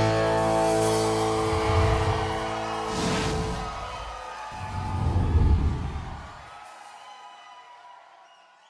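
A live country band's final chord ringing out, with a last full-band hit about three seconds in, then dying away and fading near the end.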